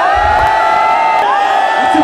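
Large concert crowd yelling and cheering back in answer to a rapper's call, many voices holding long, loud shouts. A man's voice on the microphone starts again right at the end.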